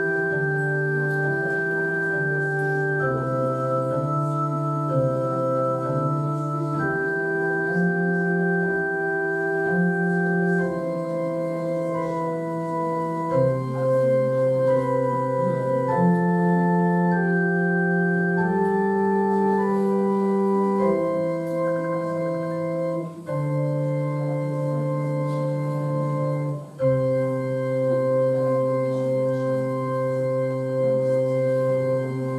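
Electronic keyboard with an organ sound playing slow, held chords that change every second or two, with two short breaks between chords in the second half.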